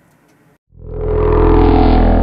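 Logo transition sound effect: a loud, low synthesized whoosh with a held chord underneath, swelling in about a second in and then holding steady.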